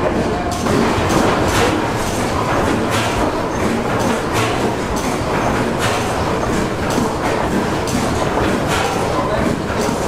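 A 1925 Otto 175 hp natural-gas engine running steadily at slow speed, its mechanism clanking with a regular beat of sharp strokes.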